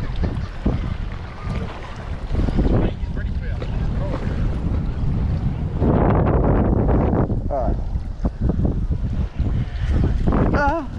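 Wind buffeting the camera microphone: a heavy low rumble throughout. About six seconds in it swells into a louder rushing stretch lasting a second or so.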